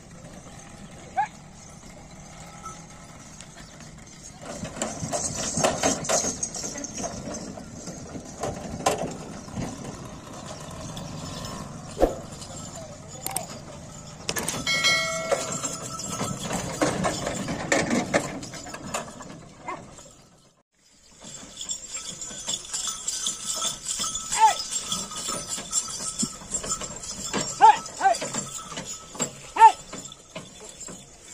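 Bullock carts being driven through a muddy field: the rumble and clatter of the moving cart and the bullocks, with people shouting and calling out to the animals.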